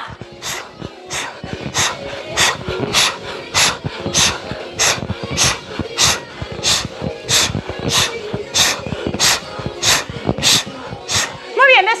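A woman breathing out sharply through the mouth with each knee raise, a steady rhythm of forceful puffs, about three every two seconds, over faint background music.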